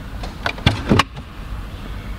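A car glove box being opened: a quick run of clicks and knocks from the latch and lid, about half a second to a second in.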